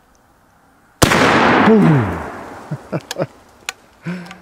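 A single shot from an original 1880s Remington Rolling Block rifle in .45-70 with a black-powder load, about a second in. The report is sharp and dies away slowly over about a second and a half.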